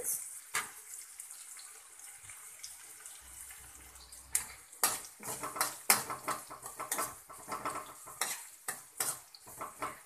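Metal spatula stirring chopped onions and green chillies frying in oil in a pan: a faint sizzle, with the spatula scraping and knocking against the pan. The scrapes come only now and then at first, then several times a second from about four seconds in.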